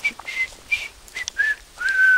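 A person whistling a tune: a string of short notes that step down in pitch, with a longer held note starting near the end.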